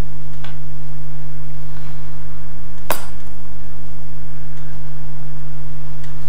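A steady low hum runs throughout. One sharp click comes about three seconds in, and a fainter tick comes near the start, as tweezers and small card pieces are handled on a cutting mat.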